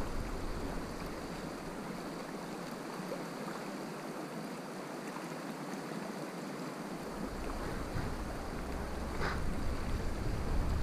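Shallow river water running steadily over a stony riffle. A low rumble on the microphone is there at first, drops away, and comes back after about seven seconds.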